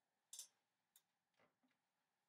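Near silence broken by a few faint clicks and taps, the loudest about a third of a second in and three softer ones later, as a 3D-printed plastic clamp on the desk is handled and moved.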